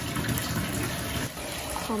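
Water from a bathtub faucet pouring steadily into a partly filled tub.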